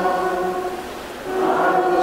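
A group of voices singing a slow liturgical chant in long held notes, with a brief break about a second in before the next phrase begins.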